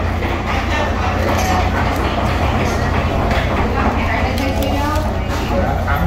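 Busy restaurant dining room: indistinct chatter of other diners over a steady low hum.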